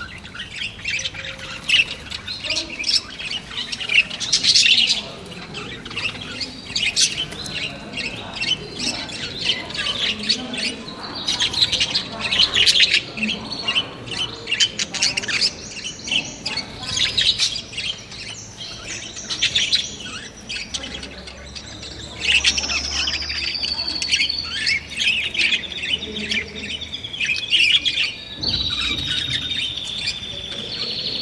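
A flock of caged budgerigars chattering without pause: dense chirps, squawks and warbles, with a longer whistled note about three-quarters of the way through and another near the end.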